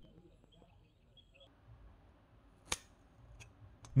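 Near silence broken by one sharp click a little under three seconds in, followed by a couple of fainter ticks.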